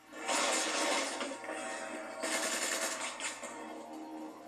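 Background music from a television drama's soundtrack, played through a TV's speaker and picked up in the room; it comes in suddenly just after the start.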